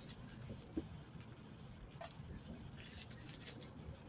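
Faint handling noise of fabric strips being rustled and tied by hand into a bow, with a few soft clicks and a light rustle about three seconds in.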